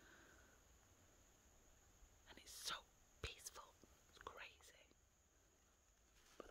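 Near silence with a faint steady hiss; about two seconds in, a couple of seconds of faint whispering, with a small click in the middle.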